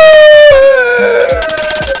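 A voice holds one long wailing note that slowly falls in pitch, over a beat of low thumps. About a second in, a high, steady electronic ringing tone like an alarm comes in.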